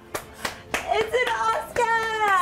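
Hands clapping in a quick run of claps, about three a second, with a woman's voice holding a long drawn-out note over the second half.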